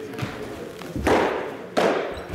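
Two sharp thuds of thrown baseballs landing, about a second in and again near the end, echoing through a large indoor hall.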